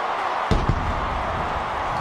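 Stadium crowd cheering a touchdown. A dull thump comes about half a second in, followed by a low rumble under the cheering.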